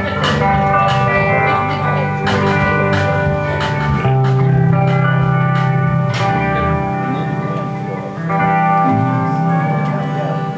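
Live country band playing: strummed acoustic guitar, electric guitar and pedal steel guitar over a drum kit with cymbal hits.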